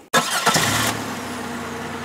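A car engine starts and settles at once into a steady idle.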